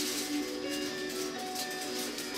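Music playing: several held notes that change pitch about every half second.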